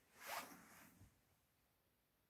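A short, faint intake of breath through the nose, a sniff, in the first second.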